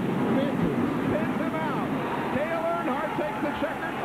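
Old TV stock car race broadcast audio with a steady roar of a packed grandstand crowd and racing engines, and a commentator speaking in places.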